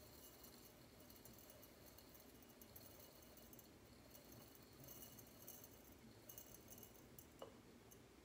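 Faint trickling patter of dried rice poured from a small pitcher into a glass jar, coming in uneven spells as the pour goes on, with one small clink near the end.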